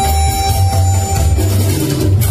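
A harmonica holds one long note over backing music with a pulsing bass line. The note stops about one and a half seconds in, leaving the backing music playing alone.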